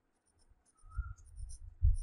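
Stylus writing on a tablet screen: irregular soft taps and faint scrapes, starting about half a second in.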